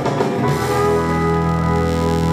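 Live country band holding the final chord of the song: electric guitars and a sustained organ-like tone ring out steadily from about half a second in.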